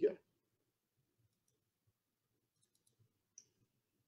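A few faint computer mouse clicks in near silence, a small cluster about two and a half seconds in and one more a little before the end.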